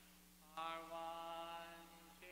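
A voice chanting one long held note, starting about half a second in and fading near the end, over a faint steady low drone.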